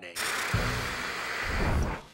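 Cartoon sound effect: a loud, hissing rush of noise across all pitches, with a deep rumble joining about half a second in, cutting off just before the end.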